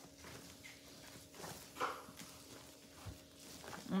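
Faint scattered light taps and knocks of things being handled on a tabletop, over a steady low hum.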